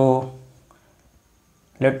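A man's voice says two short words with a quiet pause of over a second between them. A faint marker on a whiteboard can be heard in the pause.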